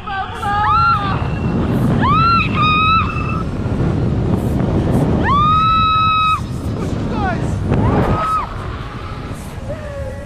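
A woman screaming and yelling with delight in a string of high, held yells, the longest about a second long some five seconds in, over wind rushing on the microphone during a tandem parachute descent.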